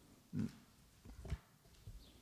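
A faint, brief, low grunt-like throat sound from a person about half a second in, followed by a few faint clicks.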